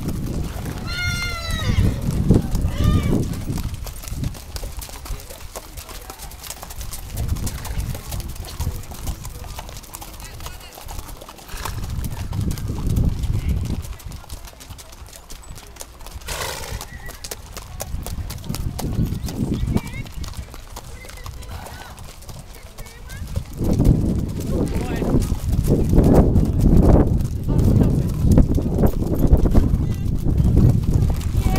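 Horses walking past on a dirt track, their hooves clopping unevenly as many pass, with riders' voices chatting. About a second in there is a brief high call, and the hoofbeats and voices grow louder over the last several seconds.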